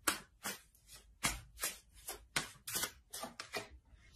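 A deck of tarot cards being shuffled by hand: a string of short, irregular slaps and clicks of card on card, about three a second.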